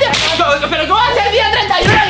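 A fabric blanket whooshing through the air in one quick swish at the start, followed by loud yelling voices.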